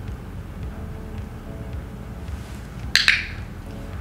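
A training clicker clicking once about three seconds in, a quick sharp snap.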